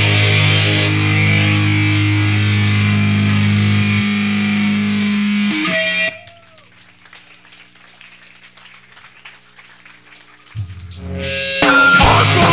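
Grindcore band playing live through distorted electric guitars and bass, holding long ringing chords that cut off about six seconds in. A few seconds of low hum follow, then a low note, then the whole band crashes back in loud just before the end, on a raw bootleg tape recording.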